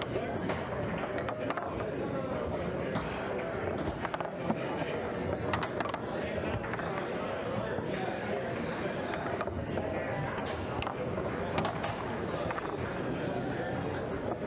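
Foosball being played: the hard ball knocking against the plastic players and table walls, with rods clacking and sharp knocks now and then, over a steady murmur of chatter in the hall.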